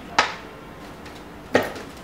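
Two sharp knocks about a second and a half apart: plastic bottles being set down on a tiled floor after diesel is poured into a spray bottle.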